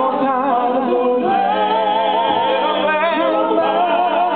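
A mixed vocal group singing a song in harmony, several voices at once with vibrato.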